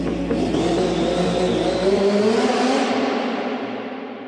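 Outro of a synthwave track: a car engine sound effect that rises in pitch over a hiss, with the bass dropping away about halfway through, then fading out.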